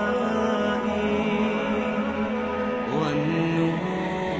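Islamic nasheed: a slow chanted melody in long held notes over a low drone, stepping up in pitch about three seconds in.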